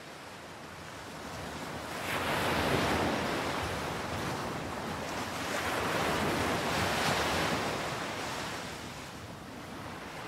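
Ocean surf washing in, an even rushing noise that swells and falls back twice, with no music over it.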